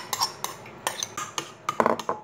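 A metal spoon scraping and clinking against glass as grated carrots are tipped from a glass bowl into a glass dish and stirred in, a quick run of sharp clinks with a busier cluster near the end.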